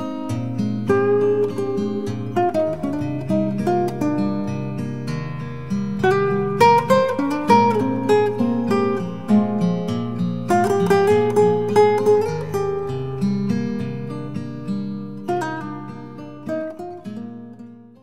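Instrumental acoustic guitar music, a run of plucked notes over held bass notes, fading out over the last few seconds.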